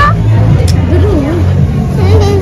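A loud, steady low hum with voices and chatter over it.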